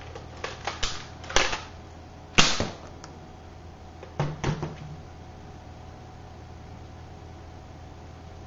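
Plastic clicks and snaps of a Nerf Maverick revolver blaster being worked by hand: several clicks, a sharp snap about two and a half seconds in, the loudest sound, and a few more clicks around four seconds. This Maverick is still fitted with its air restrictor.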